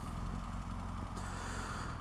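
2014 BMW R1200GS flat-twin (boxer) engine running steadily at low revs. A faint hiss rises a little past the middle.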